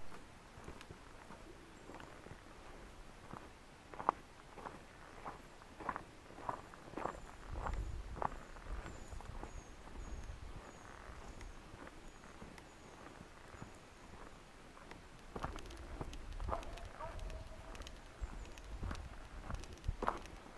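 Footsteps walking on a gravel path, quiet and at an even pace of about two steps a second, coming in two stretches, in the middle and near the end.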